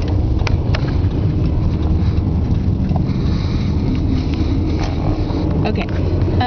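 A car running, heard from inside the cabin: a steady low rumble with a few faint clicks.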